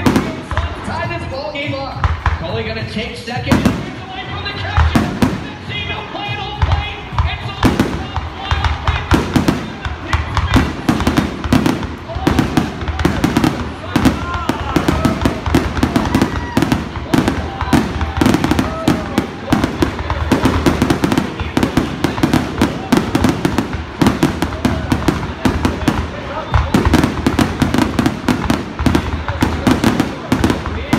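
Aerial fireworks going off: a few bangs at first, then from about eight seconds in a dense, rapid barrage of bursts and crackles, with music playing underneath.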